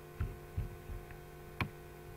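Steady electrical hum on the recording, with a few soft low thumps in the first second and one sharp click about one and a half seconds in.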